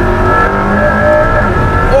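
McLaren P1 hybrid twin-turbo V8 heard from inside the cabin while driving: a loud, steady drone with a held high whine over a low rumble.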